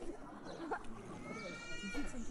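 Faint background voices of people, and near the end a short high-pitched call held for about half a second.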